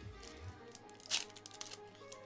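A Pokémon booster pack's foil wrapper is torn open by hand, with one sharp rip about a second in and crinkling as it is handled, over background music.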